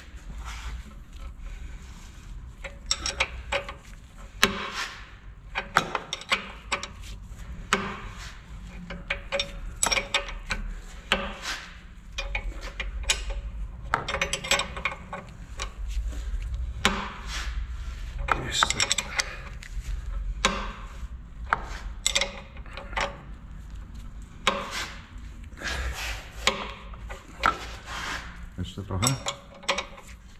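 An open-end spanner working the nut of a threaded-rod bushing puller, pressing a rubber-metal control-arm bushing into its housing. It makes irregular metallic clicks, knocks and scrapes as the spanner is turned a little at a time and set back on the nut, with the bushing close to fully seated.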